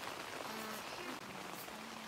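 Steady rain pattering on tent fabric, heard from inside the tent.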